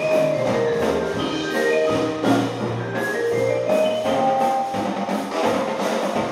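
Percussion ensemble playing: mallet keyboard instruments play quick runs of short struck notes, several falling in pitch, over regular drum strokes.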